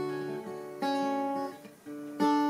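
Acoustic guitar played alone between sung lines: a chord struck at the start and another about a second in, each left ringing, the second fading away near the end.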